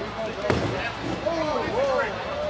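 A single hard thump on the table about half a second in, amid voices and party chatter.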